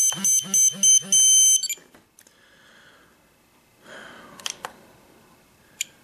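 Spektrum DX7s radio-control transmitter sounding its warning alarm: four quick high beeps and then a longer one, set off by a flaps mid-position warning on its screen. A few faint clicks from its scroll roller follow.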